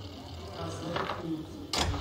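Ski-jump venue ambience in a live broadcast: a steady low hum with faint, indistinct voices in the background. A louder rush of sound comes in near the end.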